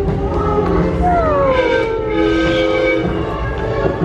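Attraction soundtrack music with held notes playing in the ride's unload area, and a falling whistle-like glide about a second in that lasts just over a second.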